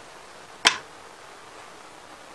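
A single short, sharp click about two-thirds of a second in, over a faint steady room hiss.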